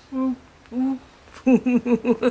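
Two short hummed notes from a person, each about a quarter second and held at one pitch, then laughter breaking out about one and a half seconds in as a quick run of short pulses.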